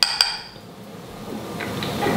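Metal spoon clinking twice against a small glass bowl, with a brief bright ring, then a soft hiss that grows louder.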